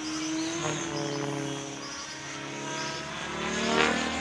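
Align T-Rex 550 radio-controlled helicopter flying overhead: its motor and rotor whine as a stack of tones that shifts in pitch, then rises and grows louder near the end.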